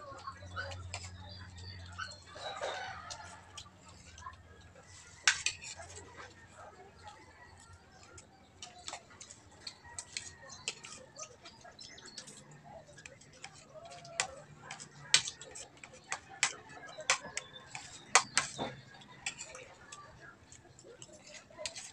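Spoons and forks clinking and scraping on plates while people eat, an irregular run of sharp clicks with louder knocks about five seconds in and several more near the end.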